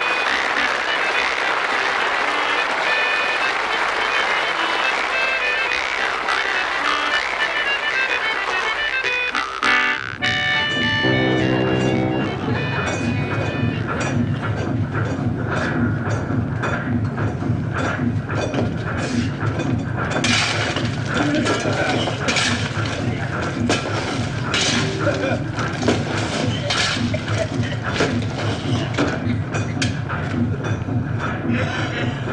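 Theme music for about the first ten seconds. After that comes the steady rhythmic chugging of a Clyde puffer's steam engine running, with regular knocks over a low rumble.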